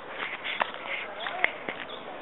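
Footsteps on a garden path, a few sharp steps, with faint voices in the background.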